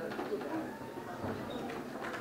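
Indistinct low murmur of several people talking in a hall, with overlapping voice fragments but no clear words.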